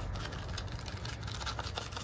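Dry onion soup mix shaken from a paper envelope onto a raw pork shoulder: a soft, continuous scratchy rustling of the packet, made of many small ticks.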